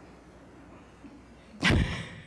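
Quiet room tone, then near the end one short, loud puff of breath on a close-held microphone as a woman breaks into a laugh.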